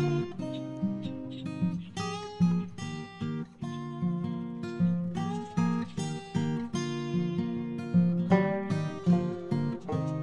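Background music led by an acoustic guitar playing chords, with a steady, regular rhythm.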